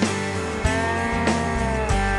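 Rock band's instrumental break: an electric guitar holds a lead note that bends up and slides back down, over bass and a drum beat with a hit about every 0.6 seconds.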